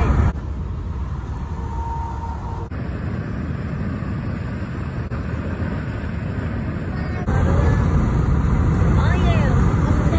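Wind buffeting and road noise of a moving car with the window open, a dense low rush that gets louder about seven seconds in.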